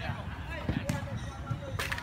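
A volleyball being hit by players' hands and arms during a rally: a sharp slap about a second in and another, louder, near the end. Voices of players and onlookers are heard around it.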